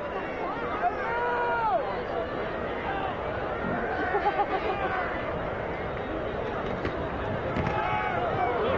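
Stadium crowd noise: a steady din of many voices shouting and calling at once, with single yells standing out now and then.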